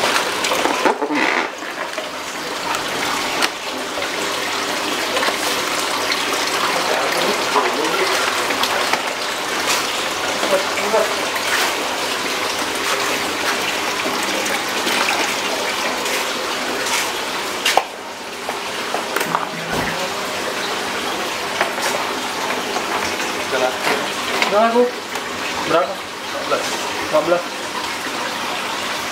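Aquarium filter pump running: a steady rush of moving, splashing water.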